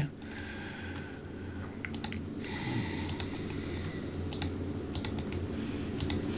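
Scattered, fairly quiet clicks from a computer mouse and keyboard as chart labels are edited on screen.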